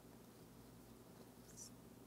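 Near silence: room tone with a low steady hum, and one faint brief rustle about one and a half seconds in, from a hand searching inside a box.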